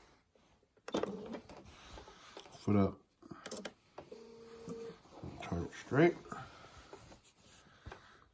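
A few short spoken words over quiet handling of quilt fabric at a sewing machine, with a brief steady hum about four seconds in.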